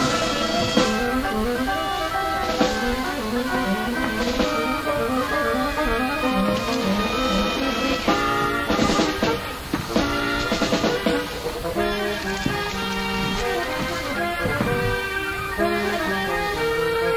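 Instrumental ensemble music from a short opera, several instruments playing overlapping melodic lines, with a run of accented chords around the middle.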